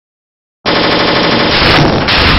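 Loud, harsh burst of an intro sound effect that starts suddenly about two-thirds of a second in, after silence, and runs on dense and rattling.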